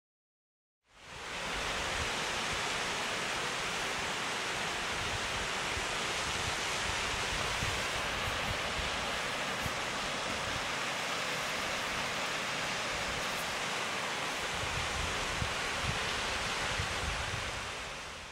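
Steady rushing hiss of a small waterfall pouring over a cliff, fading in after a second of silence and fading out at the end, with an uneven low rumble underneath.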